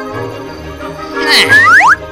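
Opening-theme music for a comedy show, with a loud cartoon-style sound effect near the end: several quick rising whistle-like glides.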